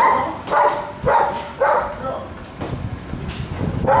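A dog barking: four barks about two a second, a pause, then another bark near the end.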